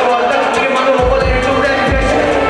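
Live hip-hop beat played loud through a club PA, with hi-hats ticking and a voice over it; the kick drum and bass drop out briefly, then thump back in about a second in.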